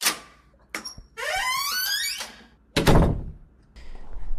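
Sound effect of a heavy door. It opens with a clunk of the latch, creaks on its hinges for about a second with a wavering pitch, and shuts with a loud, deep slam about three seconds in.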